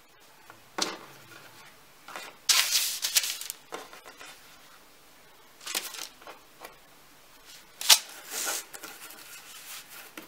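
Baking paper rustling and crinkling in several short bursts as a thin rolled-out sheet of dough is lifted, folded and laid onto it, with one sharp tap about two seconds from the end.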